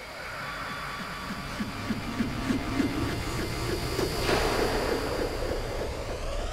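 Dark sound-design intro of an electronic music trailer: a steady low rumble under a wash of noise and short wavering tones, growing louder, with a sudden brightening about four seconds in.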